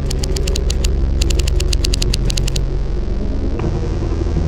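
Soundtrack of a low, steady drone with a rapid run of sharp, typewriter-like clicks, about ten a second, that pause briefly about a second in and stop about two and a half seconds in. Near the end the drone changes pitch.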